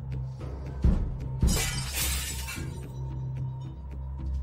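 Two sharp impacts about half a second apart, the second breaking into a crash of shattering glass that lasts about a second: a window pane being smashed.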